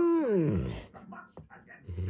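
A husky-malamute dog hums with his mouth closed: one long pitched moan, held steady and then falling away before the first second is out. Near the end comes a short, low grumble.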